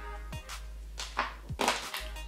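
Background music with an electronic drum-machine beat: deep kick-drum thumps and sharp snare-like hits.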